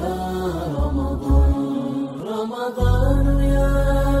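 Islamic nasheed for Ramadan: several voices chanting together over a deep, sustained low drone. The drone cuts out for about a second around two seconds in.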